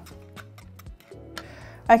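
A metal spoon clinking against a ceramic bowl while whisking eggs, cheese and pepper: a run of quick, light ticks. Soft background music runs under it.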